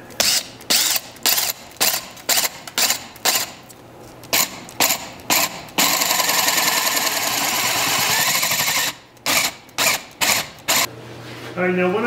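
Cordless drill with a wide paddle bit boring down through bark into a green ash bowl blank: the trigger is pulsed in short bursts about twice a second, then held for a steady run of about three seconds, then pulsed again.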